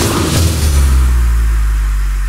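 Electronic dance music in a DJ mix as the drums drop out: a long, held, very deep bass note with a hiss above it that fades away, the whole slowly getting quieter.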